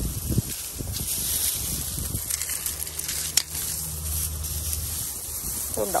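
Dry rustling of a mesh laundry bag and the crushed, dried seed stalks inside it as it is handled over a metal colander, with a low steady rumble underneath and one sharp click about three and a half seconds in.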